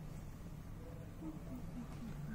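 Quiet indoor room tone: a steady low hum, with a few faint, short pitched sounds starting about a second in.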